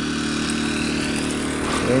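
Generator engine running steadily at a constant speed, charging batteries.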